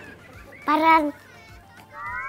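A young child's voice makes one short high-pitched vocal sound about halfway through. Faint musical tones start near the end.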